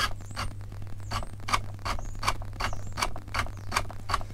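Raymarine ST1000 tillerpilot's drive motor and pushrod mechanism working to apply a minus-10-degree course change. It makes an even run of short mechanical ticks, about four or five a second, with faint creaks.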